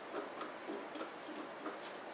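Small repeated clicks, about three a second, from a hand-turned Torx bit driver working the case screws out of a TiVo Series 2 DVR.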